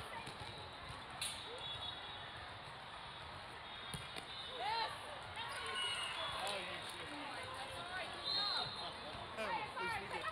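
Volleyball rally on an indoor sport court: a few hits of the ball and short squeaks of sneakers on the court floor, over a steady babble of spectators' and players' voices in a large hall.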